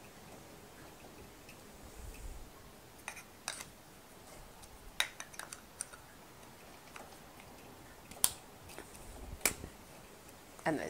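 Scattered sharp clicks from a Jakar Trio three-hole pencil sharpener being handled and eased apart, its cap and shavings container knocking together; the loudest two come near the end.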